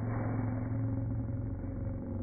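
A voice slowed down in slow-motion playback, stretched into a low, steady, drawn-out hum.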